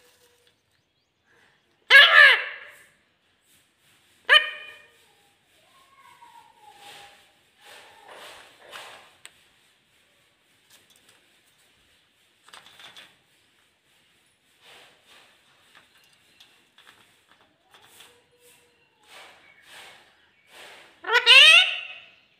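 Rose-ringed parakeet vocalising: two loud, short calls a couple of seconds apart, then soft, scattered chattering, and a loud rising call near the end.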